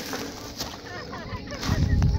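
Footsteps through dry weeds and brush, with a heavy low thump near the end.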